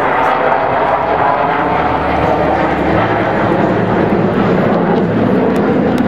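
Jet noise from six Black Knights F-16 fighters flying a bomb-burst formation split overhead: a loud, steady rushing roar.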